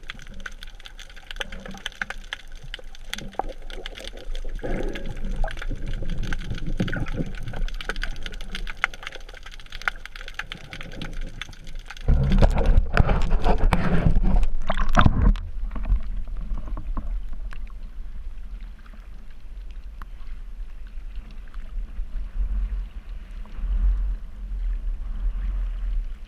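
Underwater sound picked up through an action camera's housing: dense crackling clicks and gurgling. About halfway through there are a few seconds of loud splashing as the camera breaks the surface, and then a duller, quieter wash of water above the surface.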